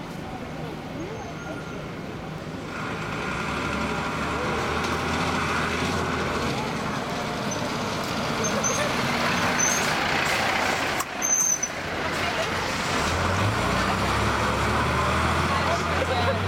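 Heavy fire truck's diesel engine approaching and driving past, getting louder from about three seconds in, over street traffic noise.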